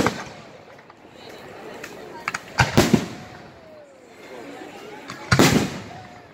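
Aerial firework shells exploding: a few small cracks followed by three loud bangs in quick succession about two and a half seconds in, then one longer, loud burst near the end.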